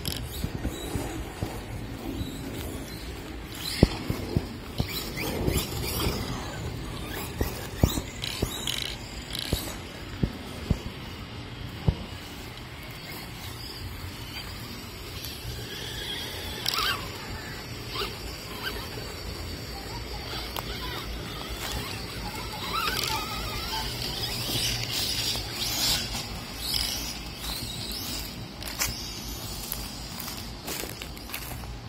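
Electric RC monster truck running on a 2S battery. Its motor whines up and down in pitch as it accelerates and slows, over the patter of tyres on grass and wood chips, with many sharp knocks in the first half.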